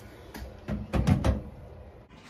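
Handling noise on the camera's microphone as it is picked up: a few light knocks, then a cluster of deep thumps and rubbing about a second in.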